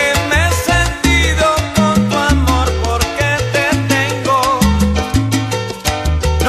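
Salsa music playing at full level, with held bass notes, dense percussion strikes and melodic lines above.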